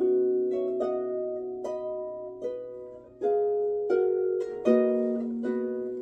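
A large pedal harp, over 100 years old, played by hand: plucked notes and chords about one every 0.8 seconds, each ringing and fading, with a brief lull about three seconds in.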